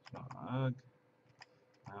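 A couple of light computer mouse clicks about one and a half seconds in, as files are selected in a list.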